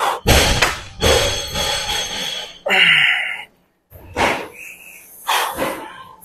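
A heavy set on a seated leg curl machine: thuds and clunks from the machine, mixed with forced, strained breaths and a short grunt from the lifter about halfway through.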